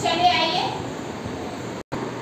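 Children's voices speaking in a classroom: a short high-pitched spoken phrase, then a low hubbub of voices. The sound cuts out for an instant near the end.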